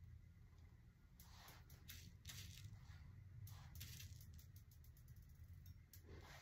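Near silence: faint scattered light ticks of small faux sprinkles being dropped by hand onto a fake cupcake's spackle frosting, over a low steady hum.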